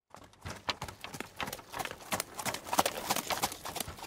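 Horse hooves clip-clopping as a horse-drawn carriage approaches, the hoofbeats growing louder over the first few seconds.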